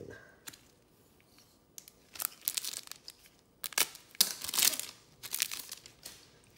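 A trading card pack's wrapper being torn open and crinkled: quiet at first, then several short rips and crackles from about two seconds in.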